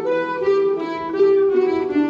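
A Breton an dro played by a small folk ensemble of harps, button accordion, flutes and fiddle, a melody of held notes stepping from one to the next.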